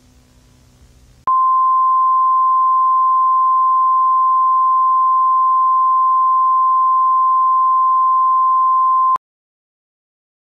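Television closedown test-card tone: a single steady, high-pitched pure tone that comes in suddenly about a second in, after faint hiss and hum, and cuts off abruptly near the end.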